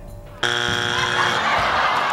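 Family Feud game-show strike buzzer: one steady buzz that starts about half a second in and lasts nearly two seconds, signalling a wrong answer.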